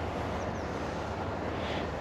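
Steady outdoor background noise: a low rumble with an even hiss and no distinct events.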